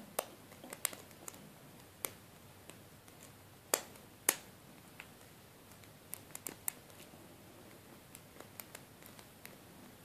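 Small, irregular metallic clicks of a curve pick working the pin stacks of a brass Abus 85/50 padlock under tension, the two loudest about four seconds in, as the picker works to regain a lost false set.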